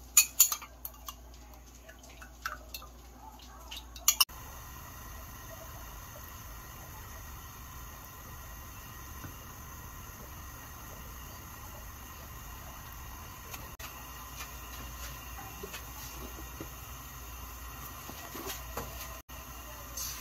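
Spoon and bowl clinking against an amber glass pot as gelatin mixture is poured in during the first four seconds. Then a steady low hiss with a few soft taps as a wooden spatula stirs the liquid in the pot.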